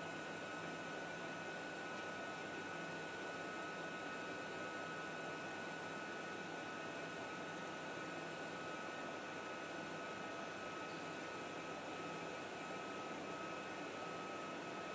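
Steady, quiet factory machinery noise: an even hiss with a faint, constant high-pitched whine and no distinct impacts.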